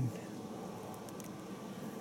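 Faint, steady hum of road traffic a couple hundred feet away.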